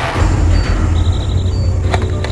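Dramatic documentary soundtrack: a loud, steady low rumble under a hissing wash, with a faint high tone about halfway through.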